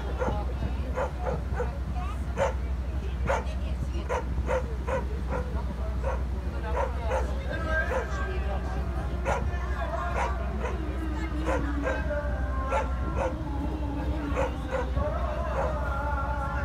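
Gulls calling over and over in short, yelping cries, above a steady low hum. Some longer, held calls or voices come in during the second half.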